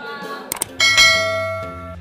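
Subscribe-button sound effect: two quick mouse clicks, then a bright bell ding that rings and fades away over about a second.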